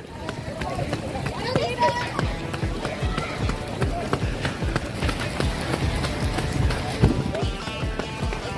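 Footsteps of a pack of road runners on asphalt: a steady rhythm of thudding footfalls, about two to three a second, close to the microphone, with faint runners' voices mixed in.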